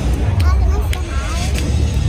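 Steady low rumble of wind buffeting a phone microphone at an open-air ballpark, with crowd voices in the stands.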